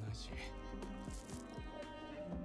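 A voice speaking Japanese dialogue over background music with long held notes.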